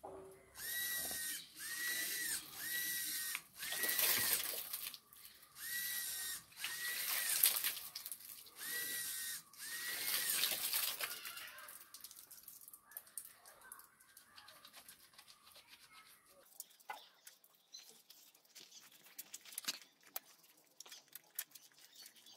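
Hobby servo motor turning a plastic tap handle, whining in about nine short bursts that each rise and fall in pitch. After about 11 s it gives way to softer patter and clicks of water splashing on the hands being washed.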